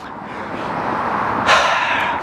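A vehicle passing on the road, its tyre and engine rush swelling over about a second and a half and loudest near the end.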